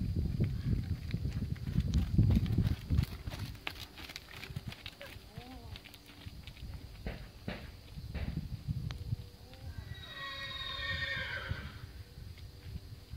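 A horse whinnies near the end, one high call of about a second and a half that wavers and slides slightly down in pitch. Before it, scattered hoofbeats on the sand arena footing.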